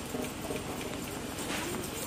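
Low ambience of an outdoor gathering: a faint murmur with a fast low pulsing underneath and a few small clicks and knocks.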